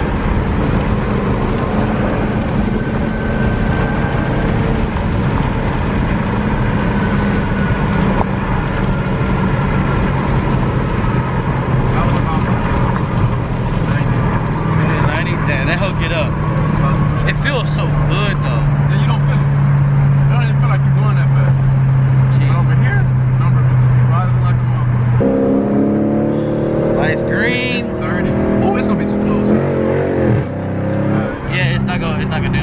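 Dodge Challenger R/T's 5.7-litre HEMI V8 heard from inside the cabin while driving, a steady engine drone that slowly climbs in pitch. Near the end the revs jump suddenly and keep rising under hard acceleration.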